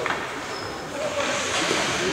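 Ice hockey rink ambience: a steady wash of spectators' voices and players' skates on the ice, with a sharp click right at the start.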